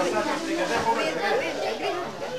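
Several people talking at once: overlapping, indistinct chatter of a small crowd.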